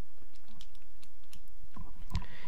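Calculator keys being pressed to work out an arctangent: a quick, uneven run of light clicks.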